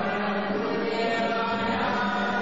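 A group of voices chanting a devotional mantra together in long held notes, steady and unbroken.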